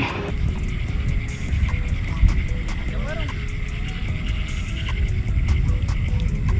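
Wind buffeting the microphone in a low, uneven rumble, with faint background music beneath it.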